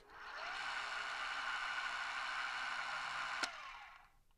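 A mechanical sound effect: a click, then a steady hissing, clattering whir. It stops with a second click about three and a half seconds in and then fades away.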